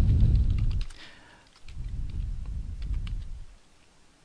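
Typing on a computer keyboard: a quick, uneven run of keystrokes that thins out near the end, over a low rumble that comes and goes.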